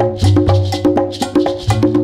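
An instrumental percussion groove: fast hand-drum and shaker strokes with a sharp wood-block-like click, over a low bass line that changes notes.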